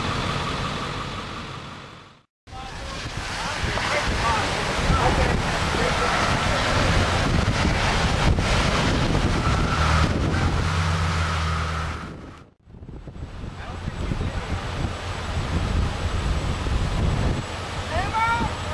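Wind blowing over a camcorder microphone outdoors, a steady rushing noise, with a low steady hum for a few seconds in the middle. The sound drops out briefly twice, at cuts between clips.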